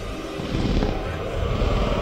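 Movie soundtrack from a velociraptor scene: a dense, low, rumbling mix of score and sound effects, fairly steady and swelling slightly.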